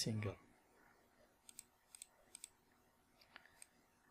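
Faint computer mouse clicks, about seven in all, several of them coming in quick pairs.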